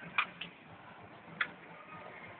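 Ice hockey stick blade clicking against a puck on the ice: two quick clicks near the start, then another about a second later.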